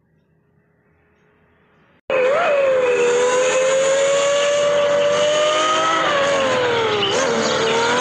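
Lamborghini V12 supercar engine running at high revs, starting suddenly about two seconds in and holding a high, steady pitch, with a brief dip and recovery in pitch near the end, as at a gear change.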